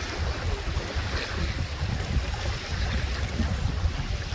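Wind buffeting the microphone in uneven low rumbles over the steady wash of lake waves on a sandy shore.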